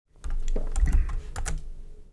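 Computer keyboard keys being pressed, a quick run of several sharp keystroke clicks.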